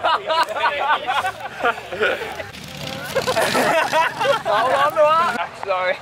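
Several people's voices talking over one another.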